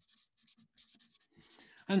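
Felt-tip marker writing a word on paper: a quick run of short, faint scratchy strokes.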